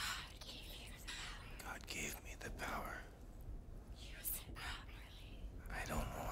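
A person whispering in breathy, hissing phrases, over a faint steady low hum.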